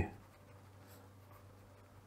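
Pen writing on paper: faint scratching strokes as words are written by hand.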